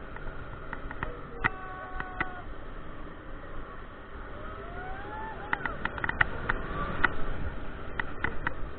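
On-ride sound from the gondola of a Mondial Furioso swing ride in motion: wind rushing over the microphone, with rattling clicks and knocks that come thick and fast in the second half. A brief rising whine sounds about five seconds in.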